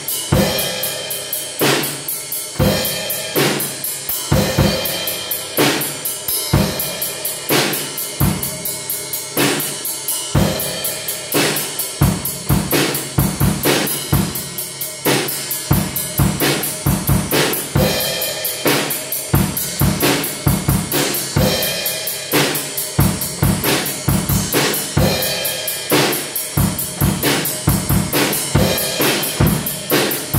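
A Pearl acoustic drum kit played in a steady, continuous beat: bass drum and snare hits under evenly spaced cymbal strokes.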